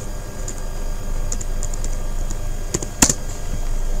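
Typing on a computer keyboard: a few scattered keystroke clicks, the sharpest about three seconds in.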